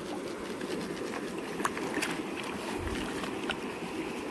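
Shallow creek water running steadily, with a few faint clicks and splashes at the plastic gold pan held in it.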